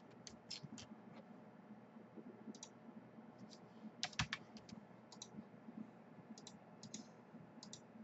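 Faint, scattered clicks of a computer mouse and keyboard, loudest in a pair about four seconds in.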